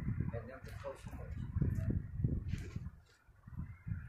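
A rooster clucking softly a few times about half a second in, over an uneven low rumble.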